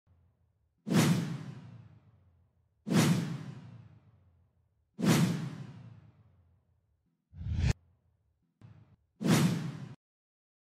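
Title-animation whoosh sound effects: four sharp hits about two seconds apart, each fading out over about a second and a half. Between the third and fourth, a short reversed swell rises and cuts off suddenly.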